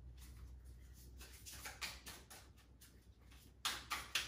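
Oracle cards being shuffled by hand: a quiet, irregular run of quick card flicks and rustles, with a couple of louder ones near the end.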